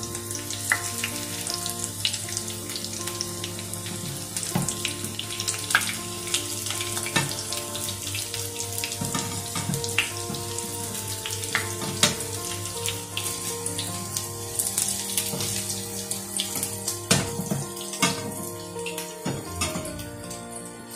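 Breaded beef cutlets sizzling as they shallow-fry in hot oil: a steady hiss broken by many sharp crackles and pops. Soft background music runs underneath.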